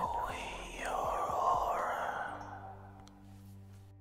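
A breathy, whispered voice effect swells and fades out over about three seconds, above quiet background music with sustained low notes.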